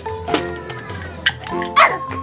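Toy blaster's electronic sound effects: a run of short beeping tones that step in pitch every fraction of a second, with a few sharp clicks and a loud burst near the end.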